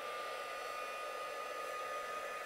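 A handheld Hippie Crafter craft heat gun running, its fan blowing a steady hiss with a single steady whine, drying a freshly applied waterslide decal on a ceramic mug.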